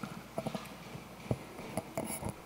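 A few scattered light knocks and clicks, small handling noises close to the table microphones, over faint room noise.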